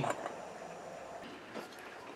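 Quiet background hiss with a faint light tap about one and a half seconds in.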